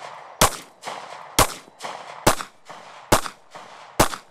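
Semi-automatic pistol fired in a steady string of five shots, a little under a second apart, each with a short echo.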